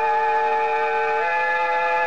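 Music bridge between scenes of a radio drama: held chords, with the lowest note stepping up about a second in.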